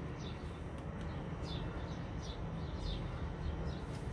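A small bird chirping faintly, a quick high note falling in pitch every half second or so, over a low steady hum.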